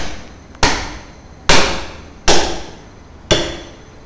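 Meat cleaver chopping through a bone-in cut of raw meat on a wooden log chopping block: four heavy strikes about a second apart, each dying away over about half a second.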